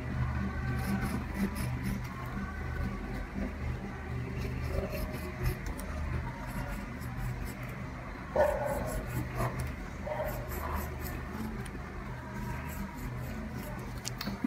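Pen scratching faintly on paper as letters are written out, over a steady low hum. A brief louder sound stands out about eight seconds in.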